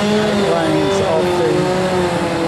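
Road traffic: engines of passing vehicles, several pitched tones rising and falling slowly over a steady rush of tyre noise.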